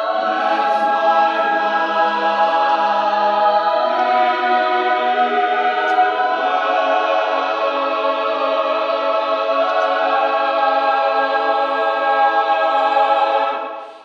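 Large mixed choir of male and female voices singing sustained, slowly shifting chords. The sound cuts off suddenly just before the end.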